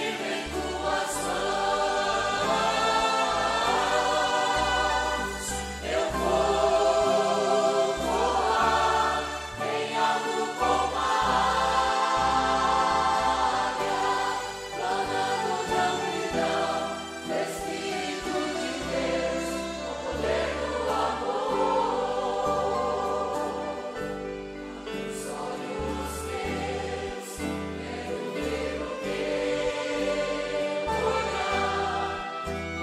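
A choir and congregation singing a Portuguese-language gospel hymn together, with instrumental accompaniment from saxophone, acoustic guitars and violins over a steady bass.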